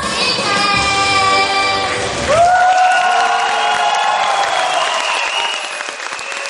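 A young girl singing to a backing track. About two seconds in the backing music drops out and she slides up into one long held final note, with applause starting under it.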